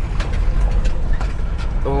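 Inside a moving diesel vehicle's cabin: a steady low rumble of engine and road noise.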